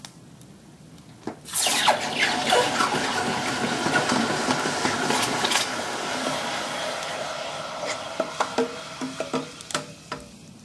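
Red-hot steel pickaroon head, its spike made from a 10.9 high-tensile bolt, plunged into a saucepan to quench it. A sudden loud hiss and bubbling starts about a second and a half in, then slowly dies away with scattered crackles near the end: the spike being hardened.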